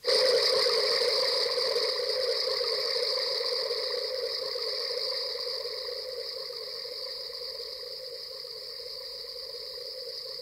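Electronic tape music: a sudden loud entry of a hissing, noise-like sound packed into several pitch bands, one low and one high band strongest. It is held throughout and slowly dies away.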